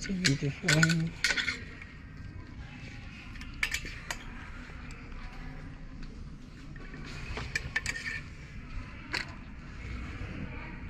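Clothes hangers clicking and clinking on a metal clothing rail as shirts are flipped through and lifted off the rack: a quick run of clinks in the first second and a half, then scattered single clicks and short clusters.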